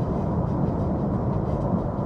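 Steady low rumble of road and engine noise inside a car's cabin while it is driven.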